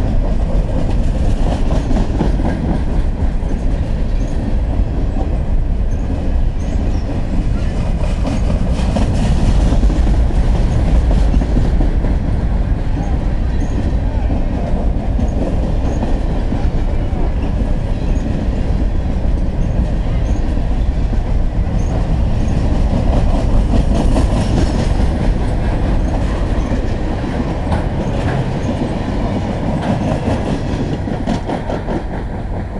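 Freight cars of a passing freight train rolling by at close range: a steady rumble of steel wheels on rail with clickety-clack over the rail joints. The sound eases slightly near the end as the last cars pass.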